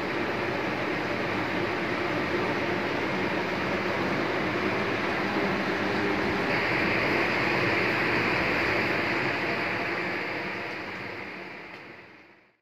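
Steady mechanical whirring noise with a faint low hum underneath, getting brighter and a little louder about halfway through, then fading out near the end.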